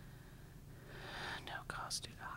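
Faint whispered speech, someone murmuring words under their breath near a microphone, starting about a second in, with a few short hissing 's' sounds toward the end over a steady low room hum.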